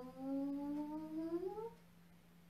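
A woman's voice holding one long vocalised "hang" as part of a breathing exercise. The tone rises in pitch near the end and stops shortly before two seconds in, over a faint steady hum.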